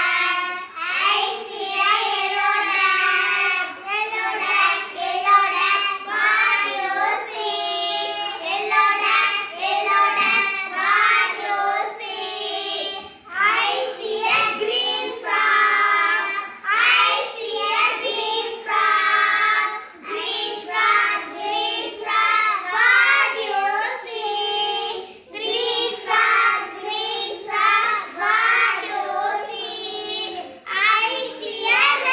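A group of young girls singing a children's song together.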